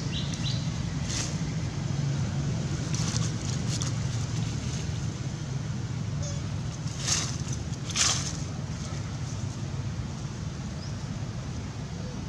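Dry leaf litter rustling and crackling in a few short bursts as a macaque moves over it, the loudest two about seven and eight seconds in, over a steady low rumble.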